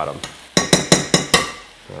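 Metal spoon clinking and scraping against a stainless steel skillet as shredded turkey is spread over onions, about six quick ringing strikes in under a second near the middle.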